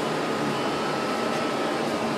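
Steady mechanical whir of running machinery, with a faint steady high-pitched whine in it.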